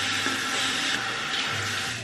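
Water running steadily from a tap into a sink while a face is washed, fading away at the end.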